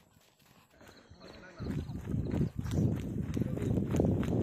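Near quiet at first, then indistinct voices of people nearby from about a second and a half in.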